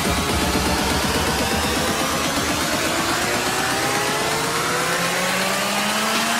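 A car engine accelerating, its pitch rising steadily for several seconds, mixed over electronic music whose low bass fades out about five seconds in.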